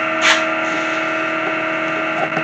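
Steady machinery hum made of several fixed tones, from equipment running in a room posted for ear protection. About a third of a second in there is a short rustle and knock as the camera is handled.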